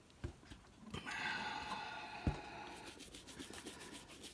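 Small shoe-polish dauber brush rubbing wax onto a leather shoe: a soft scratchy rubbing that turns into quick, even brushing strokes near the end. A few light knocks come early on as the shoe is handled.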